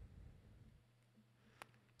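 Near silence: room tone with a faint low hum. A faint low rumble fades out within the first half-second, and there is one small click near the end.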